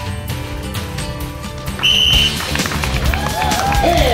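Background music, with a short shrill whistle blast about two seconds in, signalling the start of the race. Shouting voices follow near the end.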